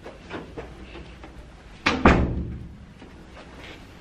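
A door shutting with a heavy thud about two seconds in, a sharp click just before it, and a few soft knocks earlier.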